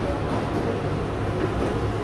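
Steady low hum and noise of a restaurant dining room, with no sharp sounds.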